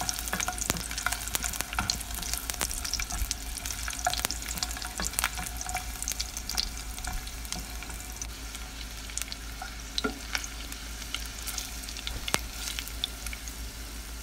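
Garlic cloves and ginger pieces sizzling in hot oil in a nonstick pan, with steady fine crackling and occasional small ticks as a spatula stirs them.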